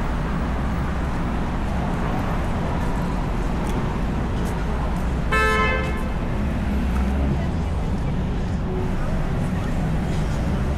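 Steady rumble of city street traffic, with a car horn sounding once, briefly, a little past halfway through.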